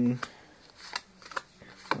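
Yu-Gi-Oh trading cards flipped one at a time through a hand-held stack, the card stock sliding and snapping with a few short, sharp clicks.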